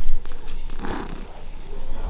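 Domestic cat purring as it is petted close to the microphone, a low steady rumble, with a muffled bump of handling noise at the start.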